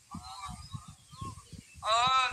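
A man's voice makes a short wordless vocal sound into a microphone, followed by a few faint fragments, over scattered low thuds. Loud speech starts just before the end.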